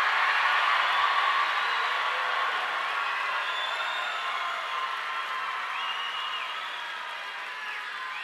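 A large rally crowd cheering and applauding, loudest at the start and slowly dying down, with a few drawn-out high calls rising above it.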